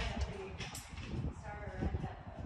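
An indistinct human voice with low thuds near the start and near the end.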